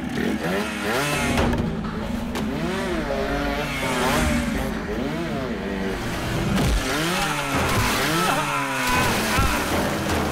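A vehicle engine revving up and down again and again, its pitch rising and falling about once a second, over steady action-film background music.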